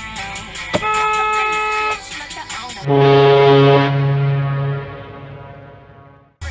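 A car horn honks once for about a second, then a much louder, deeper horn blast, like an air horn, holds for about two seconds and fades away. The horns come as a large party bus cuts across in front of the car.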